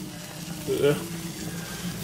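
Water boiling in a saucepan of potatoes and dumplings on the stove, bubbling steadily under a faint low hum.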